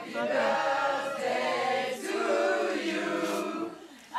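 A group of people singing together in chorus, with men's and women's voices.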